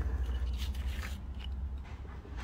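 Soft rustling and a few light clicks of an engine wiring harness's plastic connectors and corrugated loom being handled, over a low steady hum.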